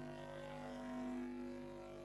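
A steady low hum made of several held tones, with no speech over it; the lowest tone fades out partway through.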